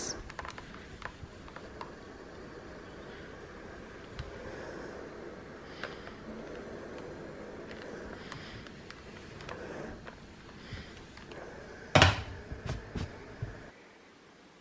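Philips Azur Performer steam iron pressing and sliding over wool fabric, faint rubbing. About twelve seconds in there is a sharp knock, then a few lighter clicks.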